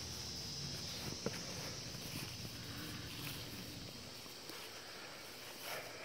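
Quiet outdoor ambience: a steady high chirring of crickets, with soft rustling footsteps in grass and one sharp click about a second in.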